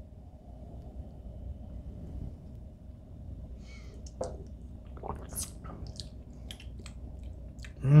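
Faint lip smacks and small mouth clicks of people tasting a sip of bourbon, scattered through the second half over a low steady room hum, ending with a short appreciative 'mmm'.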